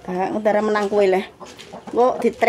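Rooster crowing: one drawn-out call lasting about a second.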